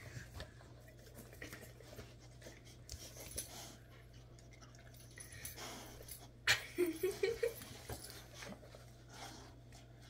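An adult boxer and a boxer puppy play-mouthing each other: soft, quiet mouthing and breathing sounds, with a short rising whine from one of the dogs about seven seconds in.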